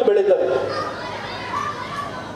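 Children chattering and playing in a crowd, their voices mixed together, after a man's amplified voice ends a phrase about half a second in.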